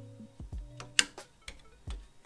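Soft background music of a few held notes, with several sharp clicks of a small wire connector being pushed into its socket on the Bambu Lab P1P printer's toolhead, the loudest click about a second in.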